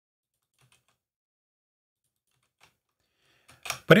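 A few faint, scattered computer keyboard keystrokes as a line of code is typed.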